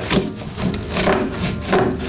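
A cardboard box flap being cut and torn off. It makes a run of about five rasping cardboard strokes.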